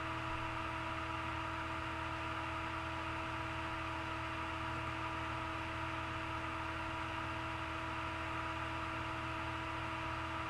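Steady electrical hum and hiss with a few constant tones, with no events in it: background noise of the recording setup.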